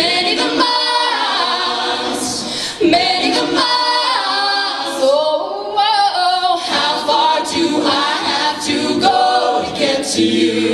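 Co-ed a cappella group singing into handheld microphones, a female lead voice over close vocal harmonies with no instruments. The low bass part drops out for the first several seconds and comes back in later.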